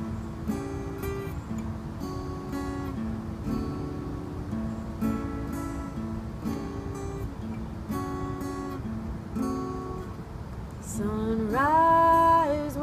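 Solo acoustic guitar playing a repeating chord pattern as an instrumental break, each chord struck sharply and left to ring. Near the end a woman's voice comes in on a long held sung note over the guitar.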